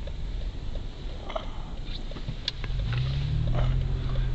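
Car driving, heard from inside the cabin: low road and engine rumble, with a steady engine hum coming up about three seconds in.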